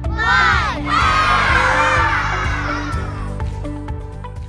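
A group of children's voices shouts the last number of a countdown, then gives a long cheer over bouncy children's music with a steady beat. The cheer fades near the end.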